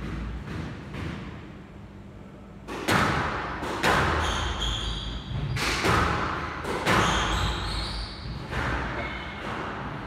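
Squash rally on an enclosed court: a hard rubber ball struck by rackets and hitting the walls, about five sharp impacts roughly a second apart from about three seconds in, each ringing off the walls, with short high squeaks of court shoes on the wooden floor between the hits.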